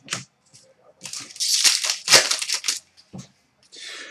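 Trading cards being handled, a small click at the start, then a brief dry rustling and scraping of cards sliding over one another from about a second in.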